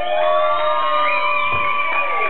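Electric guitar feedback ringing out at the end of a song: several long sustained tones, one sliding up in pitch at the start and a high one wavering slightly. A faint low thump comes about one and a half seconds in.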